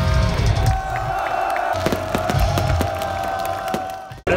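Heavy metal band playing live through a large PA, with one long held note over scattered drum hits and the crowd cheering. The level sinks toward the end.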